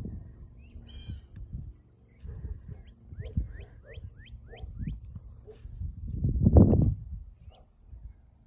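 A dog barking far off, on and off, with a bird giving a quick series of short rising chirps in the middle. A louder low thump or rumble comes about six and a half seconds in.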